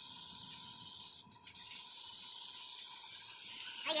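Compressed-air paint spray gun with a gravity-feed cup hissing steadily as it sprays the gloss coat onto a van's side panel. It cuts out for a moment a little after a second in as the trigger is let off, then resumes.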